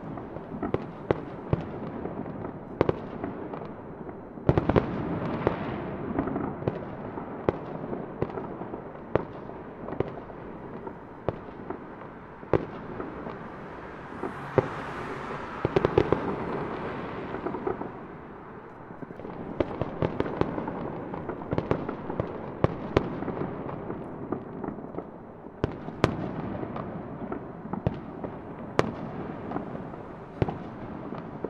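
Fireworks going off: a string of sharp bangs and pops at irregular intervals over a steady rumble of bursts. There is a brief hiss about halfway through.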